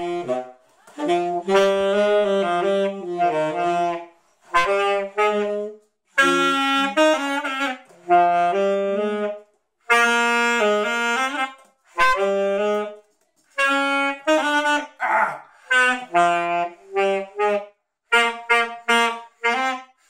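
An alto saxophone and a tenor saxophone playing a melody together, in phrases of one to three seconds separated by short breaks.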